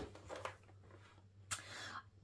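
Faint handling of a paper affirmation card on a journal page, with one brief scrape about one and a half seconds in, over a low steady hum.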